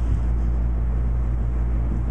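Steady low hum and rumble of room background noise, with no other event standing out.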